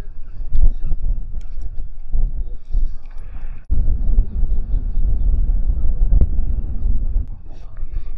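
Wind buffeting the camera microphone: a loud, gusty low rumble that breaks off for an instant about three and a half seconds in.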